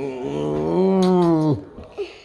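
A person's long, drawn-out voiced sound in a play-growl or animal-imitation manner, held for about a second and a half. Its pitch rises slightly, then drops off sharply at the end.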